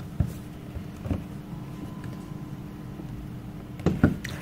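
A few scattered plastic clicks and knocks from handling a folding selfie lamp while trying to push it open, over a steady low hum. The lamp stays stuck shut.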